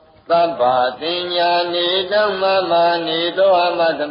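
A Buddhist monk chanting Pali scripture in a steady recitation tone, holding one pitch with small rises and falls. It starts after a short pause at the very beginning.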